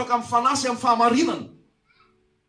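A man's voice preaching through a microphone and PA, with drawn-out high vowels, breaking off about one and a half seconds in.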